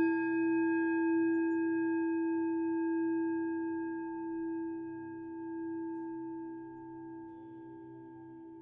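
A struck singing bowl ringing out, one strong low note with a few fainter higher overtones, fading slowly over the seconds. A faint low drone runs underneath.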